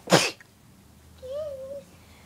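A single loud, sharp burst of breath from a person close to the microphone, of the sneeze kind, at the very start. About a second later a brief voiced note rises and falls in pitch.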